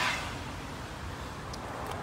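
Steady outdoor background noise, an even hiss over a low hum, with a couple of faint clicks near the end.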